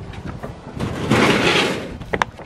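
A steel garden shed's sliding door panel moving along its track, one noisy slide lasting about a second in the second half, with a few light ticks just before it.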